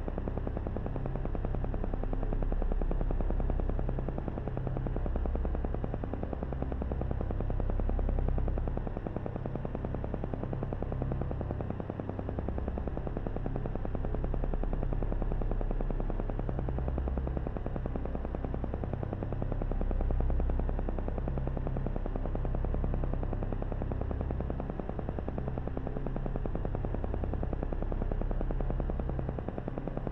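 Electronic meditation background sound: a rapid, even pulsing over a low drone, its loudness gently swelling and easing every few seconds.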